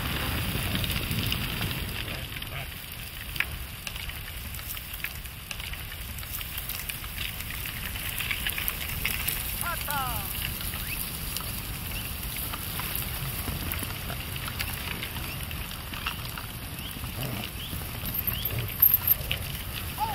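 A reindeer herd running over snow: a dense, continuous crackle of many hooves. A few short rising calls come about halfway through, and a few sharp knocks near the end are the loudest sounds.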